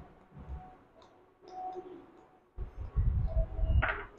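Quiet kitchen with faint handling noises: a low rumble in the second half and a single sharp click just before the end.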